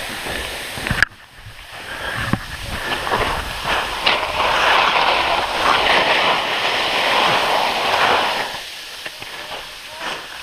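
Skis carving and scraping through soft, slushy spring snow on a steep slope, a loud hissing rush that swells with each turn. It starts about a second in and fades near the end.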